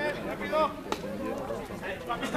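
Several people talking and calling out at once, mostly untranscribed background voices across the field, with a single sharp click just under a second in.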